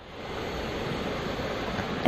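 Steady rushing hiss of microphone and room background noise, fading in over the first half second after a dead-silent break and then holding even.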